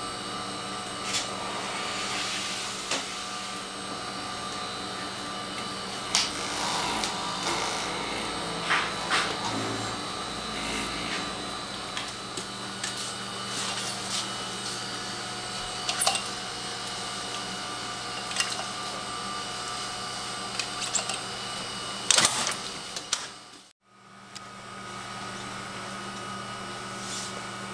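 Steady hum of running laboratory equipment, with scattered clicks and knocks of plastic tubes and lab ware being handled. The loudest knocks come near the end, just before the sound drops out briefly.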